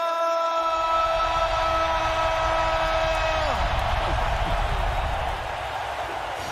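A man's voice holds one long drawn-out "rumble" on a steady pitch for about three and a half seconds, then drops off at the end. A stadium crowd cheers underneath, growing louder as the call ends.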